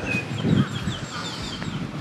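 A bird calling in a quick run of about eight short, high, falling notes. There is a soft low sound about half a second in.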